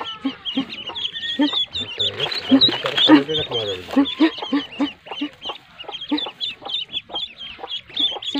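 A group of ducklings peeping, a steady run of short high chirps, with a lower call repeated about twice a second underneath.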